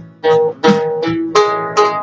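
Oud played solo: a melody of single plucked notes, about five in two seconds, each with a sharp attack and then ringing and fading.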